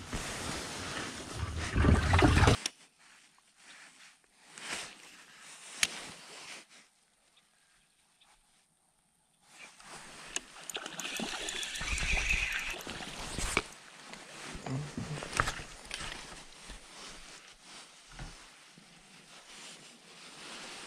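Knocks and rustling of gear being handled in an aluminium fishing boat, loudest during the first couple of seconds as a carpeted deck hatch lid is worked. Then a few seconds of silence midway, followed by more scattered handling noise.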